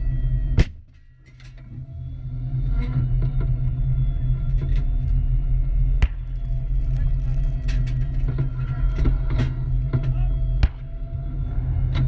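Armoured vehicle's engine running with a deep, steady rumble, broken by three sharp bangs: one about a second in, one around six seconds and one near the end. The first is the loudest, and the whole sound drops away for about a second after it before the rumble returns.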